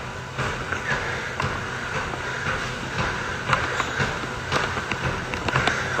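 Steady background noise with a low hum and a few faint knocks: room ambience picked up by a phone's microphone.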